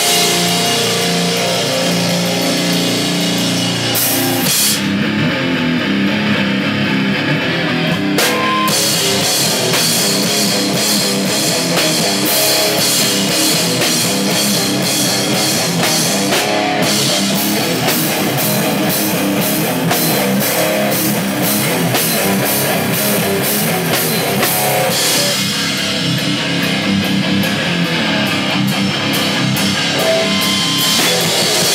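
A rock band playing live: drum kit with cymbals and electric guitars. A few seconds in, the cymbals drop out for about three seconds, then the full band comes back in.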